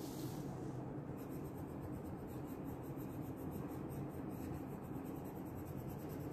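A paper sheet slides briefly on the table, then a wax crayon rubs on paper in quick, even strokes, colouring in a drawing.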